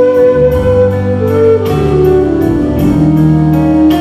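Live band playing a slow ballad: a flute plays the solo line in held notes over bass guitar and keyboard, with a soft steady beat about twice a second.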